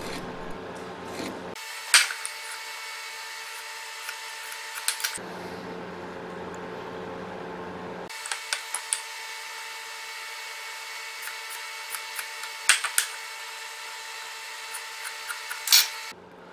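Pointed marking tool scribing shoulder lines into a pine leg along a bevel gauge: light scratching with several sharp clicks and taps of tool and wood against the bench, loudest just before the end, over a steady hum.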